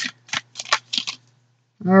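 A tarot deck being shuffled by hand: about five short shuffling sounds in the first second, then they stop.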